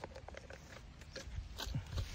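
Faint scraping and rustling of soil and grass as gloved hands work the earth around the base of a young coconut palm, with a few soft scattered clicks.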